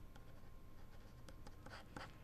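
Near silence: studio room tone with a few faint, scattered small clicks from the desk.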